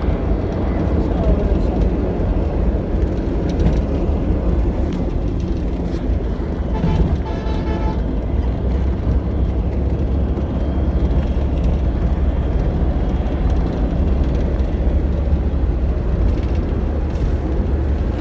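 Steady low road rumble of a moving vehicle heard from inside the cabin: engine and tyre noise while crossing a bridge. About seven seconds in, a brief pitched tone sounds over it for about a second.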